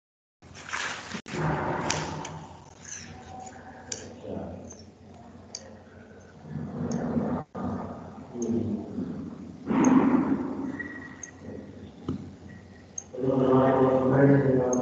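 Jumbled background sound from open microphones on an online video call: rustling, short clicks and snatches of indistinct voices, broken by two brief dropouts in the audio feed. A voice starts speaking clearly near the end.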